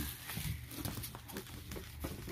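Small dogs' claws and paws clicking irregularly on a hardwood floor as they run and scramble in play.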